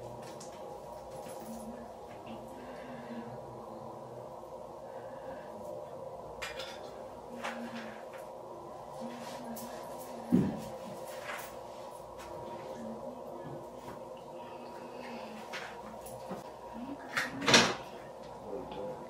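Scattered clicks and knocks of objects being handled and set down, like a cabinet door or items on a counter, over a steady hum; a sharp knock comes about ten seconds in and a louder pair of knocks near the end.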